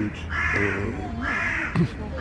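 A crow cawing three times, harsh calls about a second apart.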